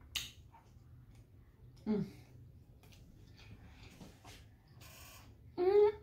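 Mouth sounds of someone eating: a sharp lip smack at the start, then faint chewing clicks and smacks. Short hums of enjoyment ("mm") come about two seconds in and again near the end.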